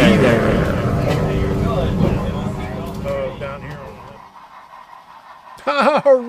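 Running rumble of a moving passenger train heard from aboard, with people's voices over it, fading and cutting off about four seconds in. A man's voice starts near the end.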